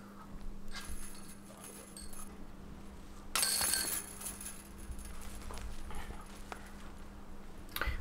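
Faint outdoor ambience with a steady low hum, a few faint knocks, and a brief noisy clatter lasting about half a second, about three and a half seconds in.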